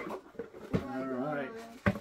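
Two sharp knocks of cardboard and plastic as a large plastic soda-bottle collectible is pulled out of its cardboard shipping box. Between them a man's voice makes a drawn-out, wavering, wordless sound.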